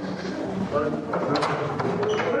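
Indistinct voices talking, with a few brief clicks or rustles about one and a half seconds in, as from a body-worn hidden camera being moved.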